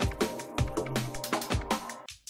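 Electronic background music with a steady drum beat and a sustained bass line.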